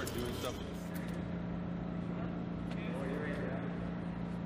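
Faint voices over a steady low hum.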